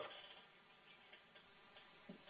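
Near silence on a telephone conference line: faint line hiss with a few faint ticks.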